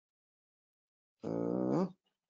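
A man's drawn-out hesitation sound, a held 'uhh', starting a little over a second in and lasting under a second, after silence.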